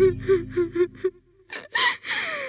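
A young woman crying: a quick run of short, catching sobs for about a second, then a sharp gasping breath near the end.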